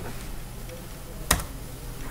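A computer keyboard keystroke: one sharp click about a second and a half in, after a couple of faint key taps, over a low steady hum.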